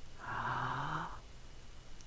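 A person taking one deep, audible breath, about a second long.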